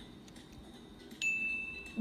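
A single chime sound effect about a second in: one clear ringing tone that starts suddenly and fades slowly, cueing the reveal of a multiple-choice quiz answer.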